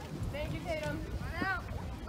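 Indistinct voices of people talking, with a pitched voice rising and falling about a second and a half in, over wind rumbling on the microphone. The band is not yet playing.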